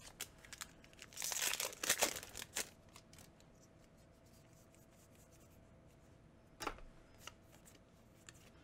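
A foil Magic: The Gathering booster pack wrapper being torn open with a crinkly rip, lasting about a second and a half starting about a second in. A brief click of cards being handled follows near the end.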